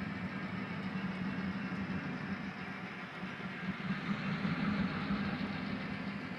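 HO-scale model passenger train running by behind a pair of GP9 diesel locomotives: a steady rolling rumble with a constant low hum.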